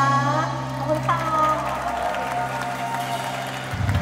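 Female singer with a live pop band: a held sung note ends about half a second in and another sung phrase starts about a second in, over a steady low bass chord, with a low drum beat coming in near the end.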